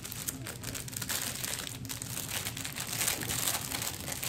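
Gift wrapping crinkling and rustling as it is unwrapped by hand, in a run of irregular crackles.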